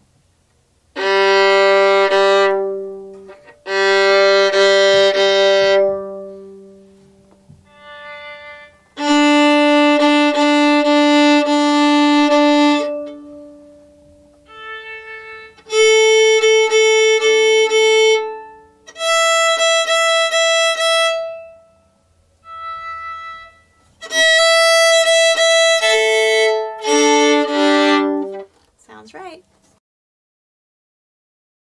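Violin bowed in long held notes, one at a time with short gaps, stepping up in pitch from the low open string to the high one (G, D, A, E), with fainter short tones between some of them: the open strings being checked against a tuner app's reference tones.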